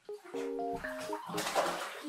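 Bathwater splashing in a tub as a puppy is washed, loudest for about half a second after the middle, over light background piano music.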